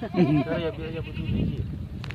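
A goat bleating: one wavering call in the first second.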